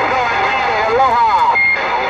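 Voice coming in over a CB radio speaker: garbled, sliding speech through steady static hiss. It ends with a brief steady high beep, a roger beep, about three-quarters of the way through.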